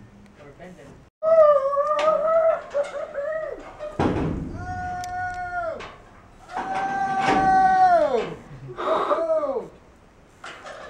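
A person whooping in long, loud yells while riding a zip line. Each yell is held on one pitch and then falls away at its end, four in all. There is a single thump about four seconds in.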